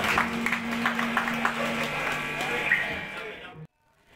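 A low instrument note held steadily from the stage, with a second note over it that stops about halfway through, amid faint voices and small clicks in the room between songs. The sound cuts off abruptly near the end.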